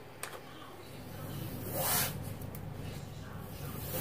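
Adhesive packing tape pulled off its roll in a short tearing pull about two seconds in, with a few small clicks as it is handled and laid along the counter.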